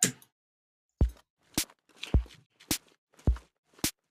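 Sparse electronic drum pattern from Ableton Live: three deep synthesized kicks with a falling pitch, each followed about half a second later by a sharp short click, with faint hissy noises in the gaps. The hi-hat meant to play with it is silent because it is triggered on the wrong note.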